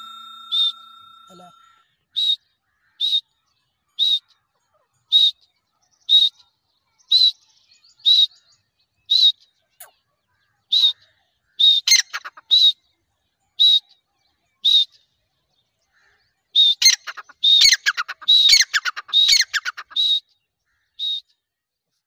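Grey francolin calling: short, high notes about once a second, then a quicker, louder run of tumbling, downward-sliding notes near the end.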